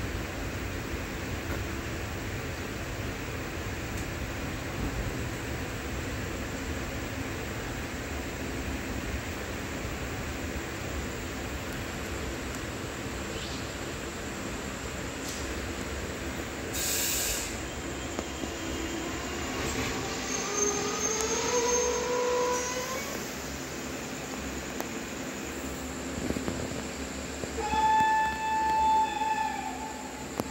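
A train running with a steady rumble. There is a short hiss about 17 seconds in and rising squeals around 20 seconds. Near the end a locomotive horn sounds one blast of about a second and a half.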